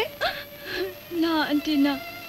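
A woman whimpering and crying, her voice coming in short broken tearful sounds with a longer held cry over the second half.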